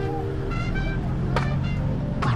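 City street traffic: motor vehicles running around a moving bicycle, with a steady low rumble.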